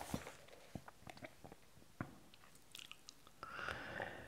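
Faint, scattered mouth clicks and lip noises from a man reading silently, with a soft breath near the end.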